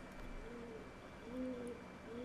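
A pigeon cooing faintly in the background, a couple of soft, low coos about a second apart.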